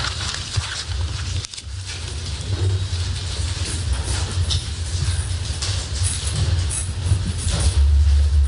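A steady low rumble with rustling and scattered light knocks and clicks: microphone handling noise and people shuffling about the room.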